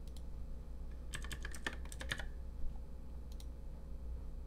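Computer keyboard typing: a quick run of about ten keystrokes from about a second in, entering a number, with a few single clicks before and after.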